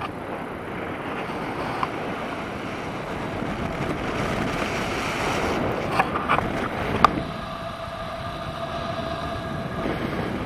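Airflow rushing over a selfie-stick camera's microphone in flight under a tandem paraglider, swelling in the middle as the glider banks hard. A few sharp clicks come six to seven seconds in, and a faint steady whistle runs through the second half.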